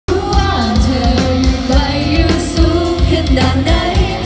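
Live pop band playing, with female vocals sung over a drum kit's steady kick-drum beat.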